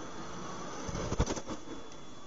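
Steady road noise inside a moving vehicle, broken by a short, low thump and rumble a little over a second in: the distant boom of a crashing cargo jet's impact and fireball.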